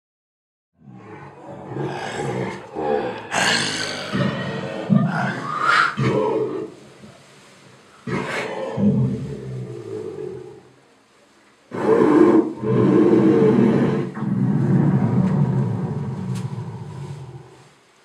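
Deep roaring and growling, a staged dragon's roar, in three long loud bursts with short lulls between them.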